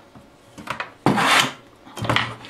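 A few faint clicks, then a short, loud rubbing scrape lasting about half a second: handling noise as the metal amplifier chassis is moved about on the workbench.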